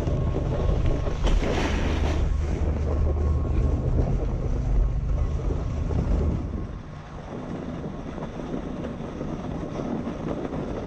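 Wind buffeting the microphone of a camera moving down a groomed ski slope, a heavy low rumble over the hiss of the ride sliding across the snow. A brighter hiss comes about a second and a half in, and the wind rumble drops away about six and a half seconds in, leaving the lighter sliding hiss.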